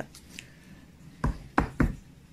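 Three short, dull knocks in quick succession, starting a little past a second in, close to the microphone: hands handling a leather shoe while a button is sewn on by hand.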